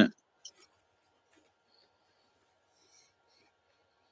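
The tail of a spoken word, then near silence broken by a few faint clicks and ticks, about half a second in and again around three seconds.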